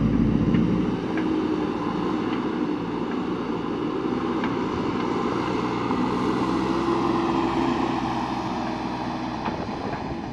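JCB backhoe loader's diesel engine running as the machine drives across loose dirt, its note swelling and easing, with a few faint clanks. The sound fades slightly toward the end as the machine moves away.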